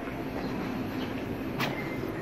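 A steady low rumble of background ambience in a narrow city alley, with a faint mechanical hum and one sharp click about one and a half seconds in.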